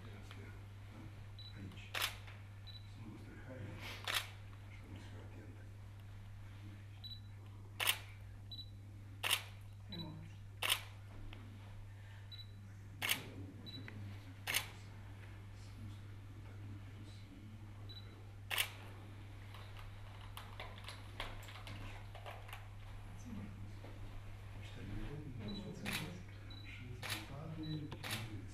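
Press photographers' camera shutters clicking: about ten single shots at irregular intervals of one to several seconds, over a steady low electrical hum.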